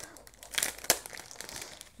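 Crinkling of a sticker packet's packaging as it is handled and opened, with irregular small crackles and one sharper crackle about a second in.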